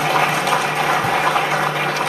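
An audience of many people applauding steadily.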